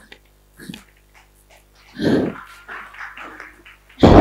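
A woman's wordless vocal sounds, animal-like cries: a few short bursts, the loudest about two seconds in, followed by a string of quieter ones.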